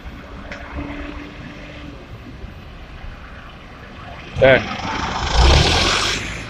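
Road traffic on a town street with a car approaching, a short loud call from a voice about four and a half seconds in, then a loud rush of noise swelling near the end.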